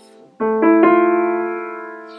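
Piano chord struck about half a second in, its notes entering in quick succession over a few tenths of a second, then held and slowly fading. The chord demonstrates the Aeolian mode, the minor mode with a flattened sixth.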